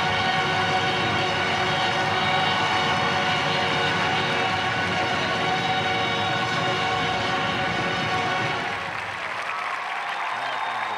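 A massed marching band of about 3,000 players holds one long brass chord over crowd applause. The chord stops a little before the end, leaving the applause.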